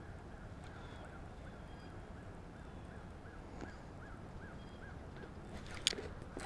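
Shimano SLX DC baitcasting reel being cranked on a retrieve: a faint, even whirr that pulses about three times a second with the handle turns, retrieving really smooth, stopping about five seconds in. A single sharp click near the end.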